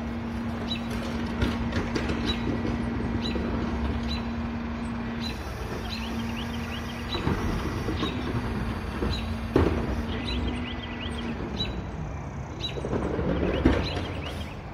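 Rear-loading garbage truck working at the curb: its diesel engine runs at a steady raised pitch, with metal clanks and a sharp bang about nine and a half seconds in as cans are handled at the hopper. The engine note drops about eleven seconds in and swells louder near the end.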